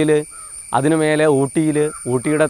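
A man speaking in Malayalam over a steady, high-pitched insect drone.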